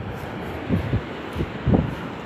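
Wind buffeting the phone's microphone, a few short low rumbles over a steady rushing noise.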